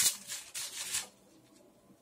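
Plastic strip packets of loose rhinestones crinkling and rattling as they are handled, starting with a sharp click and going quiet after about a second.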